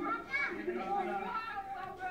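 Speech only: voices talking, heard as a TV's speaker re-recorded by a phone.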